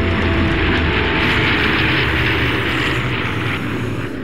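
Single-engine propeller light aircraft running at high power: a steady, loud engine drone with a rushing propeller-wash noise that swells from about a second in to near the end.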